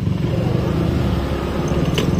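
Motor scooter's small engine running at low speed, a steady low drone with rapid firing pulses.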